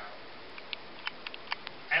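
A pause in a man's speech into a handheld microphone: steady hiss with several faint, scattered clicks, and speech starting again right at the end.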